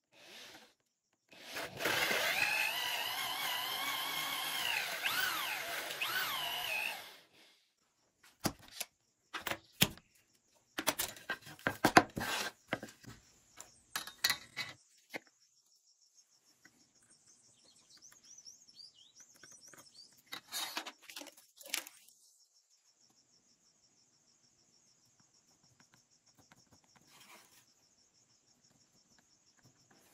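Cordless drill with a Forstner bit boring a large hole into a wooden board, running steadily for about five seconds. Then a string of sharp knocks and clicks from tools and wood being handled on the bench.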